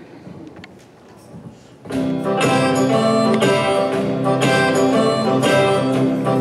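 Live band strikes up a song intro about two seconds in: guitar strumming in a steady rhythm over upright bass, with a country feel.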